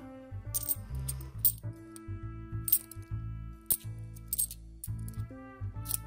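50p coins clinking against one another as a handful is sorted through by hand, a few sharp clinks at irregular intervals, over steady background music.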